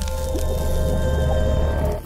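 Logo-intro music: held tones over a deep bass drone, mixed with a noisy sound-effect layer.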